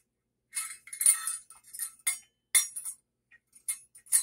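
Kitchen utensils and glassware clinking and rattling as they are handled and sorted through, a series of sharp clinks.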